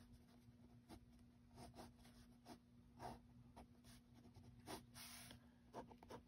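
Faint scratching of a BIC Round Stic ballpoint pen drawing short strokes on sketchbook paper, with several brief strokes at irregular intervals.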